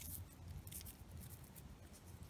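Faint scratchy rustling of fingers rubbing dirt off an old flat metal button, with scattered small ticks.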